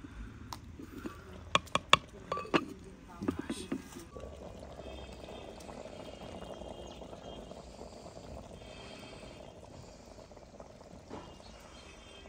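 A clay lid knocking and scraping on the rim of a clay handi, several sharp clinks in the first few seconds, the loudest about two seconds in. From about four seconds a steady, soft simmering of mutton cooking in the open pot follows.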